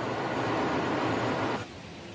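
A ship at sea: a steady rushing noise that drops sharply about one and a half seconds in, leaving a fainter hiss.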